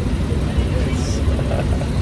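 City bus engine running with a steady low rumble, heard from inside the passenger cabin, with faint passenger voices behind it.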